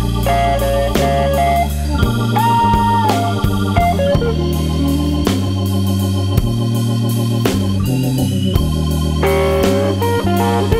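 Blues band playing an instrumental break with no vocals: sustained, sometimes bending lead notes over a steady bass line and regular drum hits.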